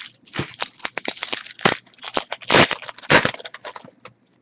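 Foil trading-card pack wrapper torn open and crumpled by hand: dense crinkling and crackling, with the three loudest crunches in the second half.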